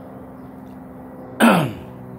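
A man clears his throat once, about a second and a half in: a short voiced sound falling in pitch, over a steady low hum.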